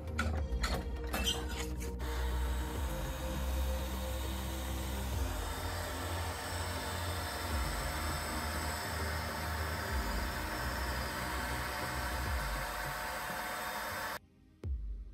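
Electric pipe threading machine running with a steady motor hum. A few sharp metal clicks and knocks come in the first two seconds.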